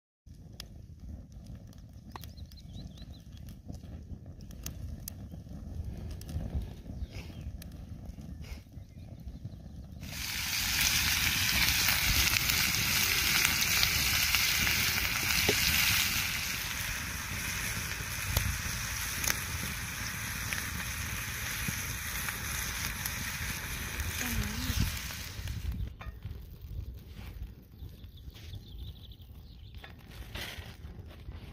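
Bacon medallions and tattie scones sizzling in a cast iron griddle pan over a campfire. The sizzle starts suddenly about a third of the way in, is loudest for the next few seconds, then settles somewhat lower before fading near the end. Before it there is only a low rumble.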